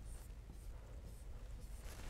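Faint scratching and tapping of a stylus writing on the glass of an interactive display screen.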